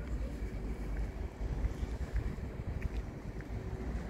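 Wind buffeting a phone microphone: an uneven low rumble that swells and dips, with a faint hiss above it.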